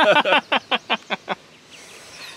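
People laughing: a quick run of about six "ha" pulses a second that fades out about a second and a half in.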